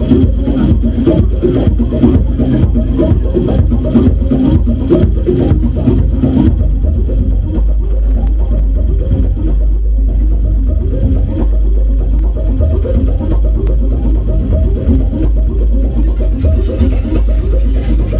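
Electronic music played live on a Eurorack modular synthesizer: a deep sustained bass under a fast, dense rhythmic pattern. The crisp high ticks drop out about six seconds in, and the highs fade further near the end.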